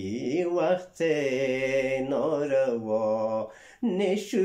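A man singing a Wakhi ghazal unaccompanied, in a slow, chant-like style: a short rising phrase, then one long note held for about two and a half seconds, breaking off briefly near the end.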